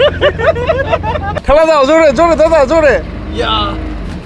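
Men's voices laughing and calling out loudly, with a run of rhythmic ha-ha bursts in the middle. A steady low engine hum runs underneath and cuts off suddenly about a second and a half in.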